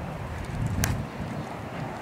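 Wind buffeting the microphone as a low rumble, with one sharp click a little under a second in.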